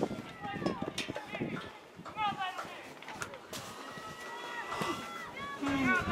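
Voices of spectators and players at a youth football game: overlapping talk and high-pitched calls, none of it close enough to make out, with a few sharp clicks.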